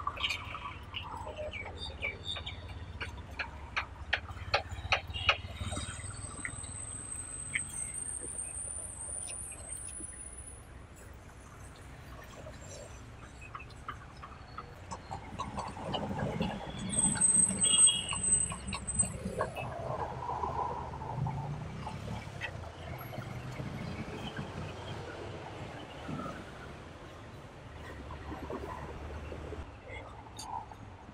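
Outdoor street ambience: a low hum of traffic, people's voices murmuring, and a run of sharp clicks over the first few seconds. High thin chirps come twice, the second time among the loudest moments.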